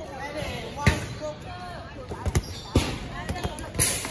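Dodgeballs hitting the court and players in a series of sharp impacts: one about a second in, a quick cluster between two and three seconds, and a louder one near the end, over the shouts and chatter of young players.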